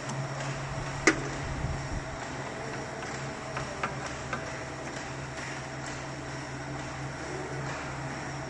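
Light metallic clicks and taps as the cutting tool on a metal lathe is tightened and set by hand, with one sharper click about a second in and a few fainter ones near four seconds in, over a steady low machine hum.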